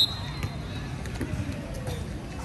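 Football pitch sounds: the thud of the ball being played and indistinct voices of players, over a steady low background noise. Right at the start a sharp loud sound is followed by a thin high tone that fades within about a second.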